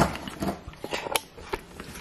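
A beagle licking out a casserole dish, heard as scattered, irregular small clicks and scrapes of tongue and jaws against the dish.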